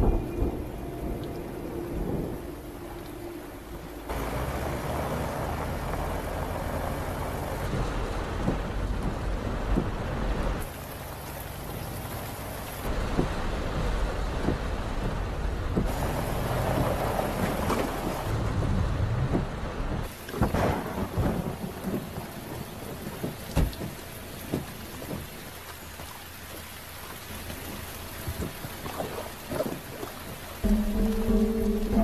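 Heavy rain pouring down with thunder, the rain's level changing every few seconds. Sharp cracks of thunder come about twenty seconds in.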